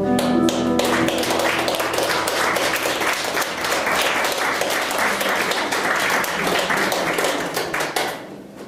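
Audience applauding: a dense, steady clatter of hand claps that follows the last notes of a song's accompaniment, which die out within the first second. The clapping stops near the end.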